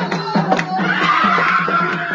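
Dance drumming at about four strokes a second, with a woman's high, wavering ululation rising over it about a second in.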